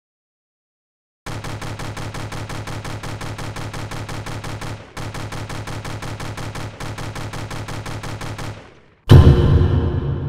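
Outro sound effect: a rapid electronic pulsing tone, about six pulses a second with two short breaks, followed about nine seconds in by a loud synthesizer chord stinger that rings out and fades.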